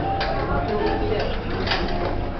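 Indistinct voices in a busy room, with a short sharp noise about a second and a half in.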